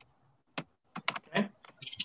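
Computer keyboard being typed: a short run of quick keystrokes, about half a second to a second in.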